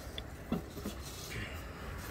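Low, steady outdoor background noise with a few faint, short clicks, with no clear source.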